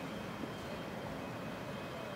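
Distant twin-engine jet airliner's engines running with a steady noise and a faint high whine.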